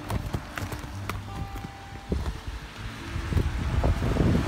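Outdoor wind rumbling on a handheld phone's microphone, with scattered knocks and clicks from handling.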